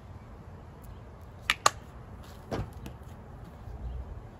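Plastic ketchup squeeze bottle being handled: two sharp clicks in quick succession about a second and a half in, then a duller knock about a second later as it is put down.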